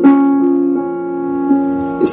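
Piano accompaniment playing a slow ballad: a chord struck at the start rings on, with the notes shifting a few times underneath.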